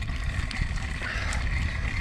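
Steady low rumble of a mountain bike being ridden on a dirt trail, heard through a handlebar-mounted GoPro's microphone: trail vibration and air rushing over the camera, with a few faint rattles.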